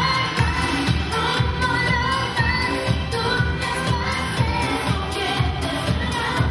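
A woman singing a pop song into a microphone over an amplified backing track with a steady beat of about two strokes a second.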